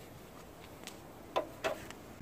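A few light plastic clicks and taps as a car's small front turn-signal lamp housing is handled, the two loudest close together near the end.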